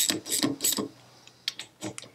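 Ratchet spanner ticking in quick back-and-forth strokes as it undoes a bolt that holds the two halves of a rear brake caliper together. Three strokes come close together, there is a pause, then two short clicks near the end.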